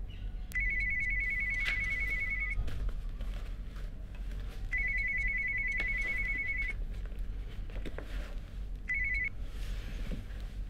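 Mobile phone ringing with a high, rapidly trilling electronic ring: two rings of about two seconds each, then a third cut short as the call is answered.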